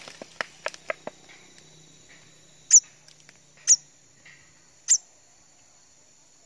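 A steady high insect drone, like crickets, runs under three short, sharp high-pitched chirps about a second apart, which are the loudest sounds. A few light clicks fall in the first second.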